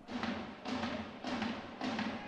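A steady drum beat, about two beats a second, each beat with a hiss of noise behind it.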